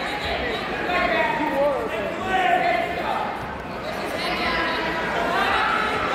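Indistinct chatter of spectators in a large gymnasium hall, several voices talking over one another.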